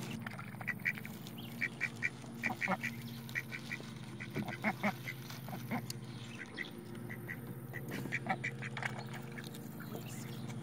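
Ducks quacking in short, quick calls, often two or three in a row, again and again while they feed, over a steady low hum.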